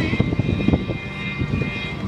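Wind buffeting the microphone: an uneven low rumble with gusty thumps.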